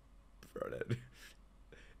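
A man's short voiced sound, about half a second long and starting about half a second in, followed by a couple of breathy puffs.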